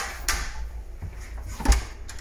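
Handling of a cupboard door with a metal lever handle: a sharp click, then a louder knock near the end.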